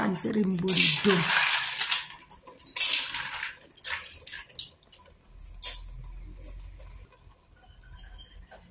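Periwinkles in their shells tipped into a pot of soup: a run of sharp clicks and rattles as the shells knock against each other and the pot.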